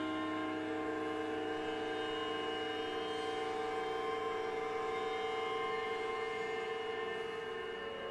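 Struck hanging metal percussion left ringing: many steady overlapping tones held at an even level, with a slow beating in the pitch that is strongest.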